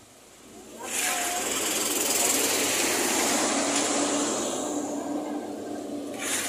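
A motorcycle passing close by, its small engine rattling loudly for a few seconds and then fading as it goes away.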